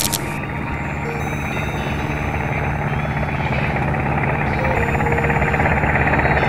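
Cartoon sound effect of a small helicopter-style rotor whirring with a fast flutter, growing steadily louder as the propeller-topped robot flies.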